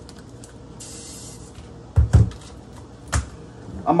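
Plastic food tubs knocking on a kitchen counter as they are put down and picked up: two sharp knocks close together about halfway through, then another a second later.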